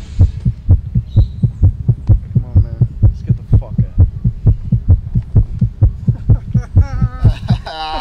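A steady, fast, heartbeat-like low thumping in the soundtrack, about four thumps a second, with faint snatches of voice; a voice comes in near the end.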